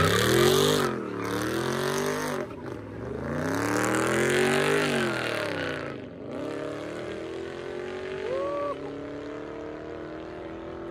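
Car engine revving hard, its pitch climbing and falling about three times with screeching tires during the climbs, the sound of a burnout or donuts. In the last few seconds it settles into a quieter, steadier drone.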